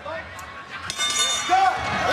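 Ring bell struck about a second in, ringing briefly with a bright metallic tone: the signal for the end of the round.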